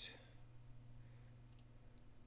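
A few faint computer mouse clicks over a low, steady electrical hum.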